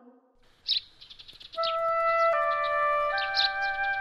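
After a brief silence, birds chirp. About a second and a half in, soft background music of long held flute-like notes begins, with the chirping going on over it.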